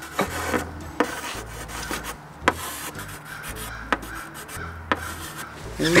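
Chalk scraping across a blackboard as shapes are drawn, with a sharp tap every second or so where the chalk strikes the board at the start of a stroke.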